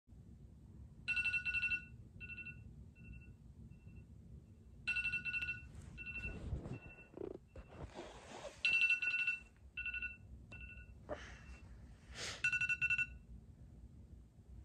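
Smartphone alarm tone going off: a high electronic beeping that comes in loud bursts about every four seconds, each burst trailing off in fainter repeats. Rustling sounds of movement come in between the bursts.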